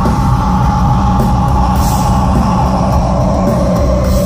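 Heavy metal band playing live through a festival PA, loud: a long held note rings over the bass and drums, with no singing.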